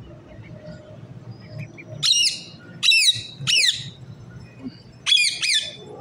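Birds calling: five short, loud calls, each falling in pitch, three about two seconds in and a quick pair near the end.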